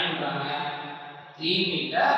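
A man's voice speaking slowly, holding long drawn-out syllables.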